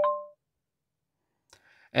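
Short electronic chime of a few notes from a BYD car's infotainment system, under half a second long, as the voice assistant acts on a spoken command to open the vehicle settings.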